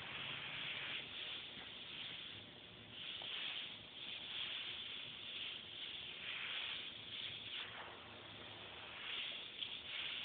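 Airbrush spraying paint: a steady hiss of compressed air through the nozzle, swelling and easing over and over as the trigger is worked in short pinstriping passes.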